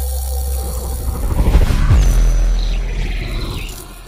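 Channel intro sound design: a deep bass rumble with whooshing sweeps. It swells to its loudest about two seconds in, then fades away near the end.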